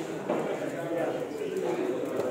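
Indistinct overlapping voices of people chatting in a billiard hall, at a steady moderate level with no ball strikes.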